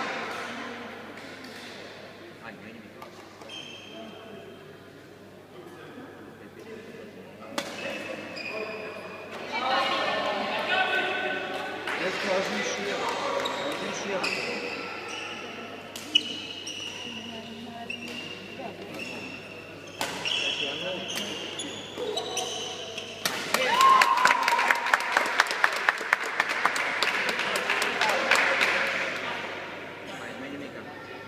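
Echoing sports-hall ambience during a pause in a badminton match: voices chattering, short squeaks of shoes on the court floor and a few sharp smacks. For the last few seconds, a dense run of rapid clapping is the loudest sound.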